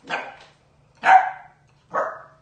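Puppy barking: three short barks about a second apart, the middle one loudest.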